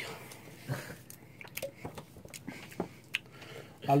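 Faint scattered clicks and light knocks of a glass tumbler and an aluminium drinks can being handled and lifted off a table.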